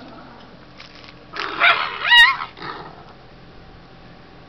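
A dog held down against its will for toenail clipping cries out: a rough, harsh outburst about one and a half seconds in, then at once a loud, short yelp that slides upward in pitch, and a weaker sound after it.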